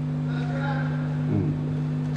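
Steady electrical mains hum from the guitar amplifier and speaker cabinet, two held low tones that do not change. It is the unwanted hum the band is chasing at soundcheck, which the crew puts down to dirty mains power.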